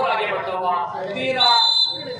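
Referee's whistle blown once in a steady high tone lasting about half a second, starting a little past the middle, the signal to serve. Crowd and commentator voices come before it.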